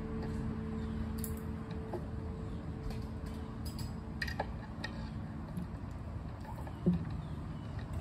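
Handling noise from an acoustic guitar and its cable being plugged in between songs: scattered clicks and knocks over a steady low PA hum, with a held steady tone fading out about halfway through.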